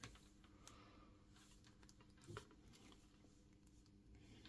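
Near silence with a few faint, light clicks as multimeter test probes are handled against a charger's barrel plug, and one slightly louder tap a little past halfway.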